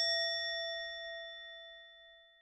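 A single struck bell-like chime, added as an editing sound effect, rings with several steady tones and fades away.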